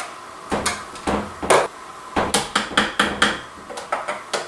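Clicks and knocks of a plastic food processor bowl and lid being handled, with a quick run of taps in the second half.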